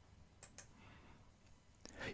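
Computer mouse double-click: two quick, faint clicks about half a second in, selecting a supplier from a drop-down list. Otherwise near silence.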